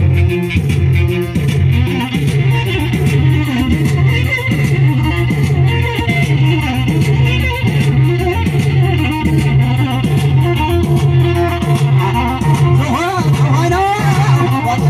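Live Tigrinya band music played loud through a PA: a fast plucked-string lead runs over a repeating bass line with a steady beat.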